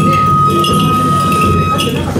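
Hana matsuri festival music: a transverse bamboo flute holds one long note that stops near the end, over steady drumming and metallic chinking.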